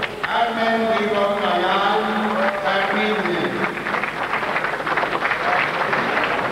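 A man's voice over an arena public-address system, drawn out and echoing as the bout's decision is announced, with crowd noise behind it.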